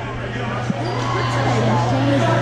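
Spectators chattering in a gymnasium over a steady low hum, with one short thud a little before halfway.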